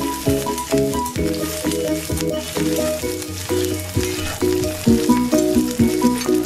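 Onions and green capsicum sizzling as they fry in oil in a metal wok, stirred with a slotted steel spatula. Background music of short, evenly paced notes plays throughout.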